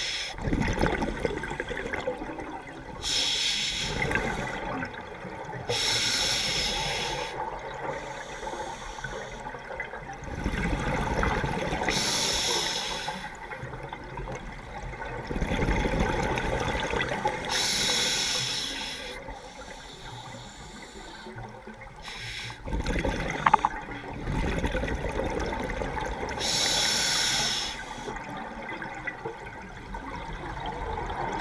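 Scuba diver breathing through a regulator underwater. Each inhale is a short hiss and each exhale a low rush of exhaust bubbles, with a breath every five to six seconds.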